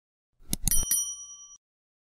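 Sound effects of an animated subscribe button: three quick mouse clicks about half a second in, followed by a short bell ding that rings out for about a second.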